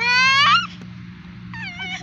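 A young child's loud, high-pitched squeal that rises in pitch for about half a second, followed near the end by a shorter, quieter wavering cry.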